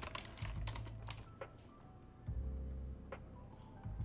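Faint computer keyboard typing: a quick run of keystrokes and clicks in the first second and a half, then a couple more near the end.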